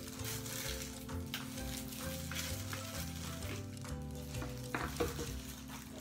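Crackly rustling and small clicks of plastic gloves handling a bottle as it is opened, over soft background music with a steady low tone and changing bass notes.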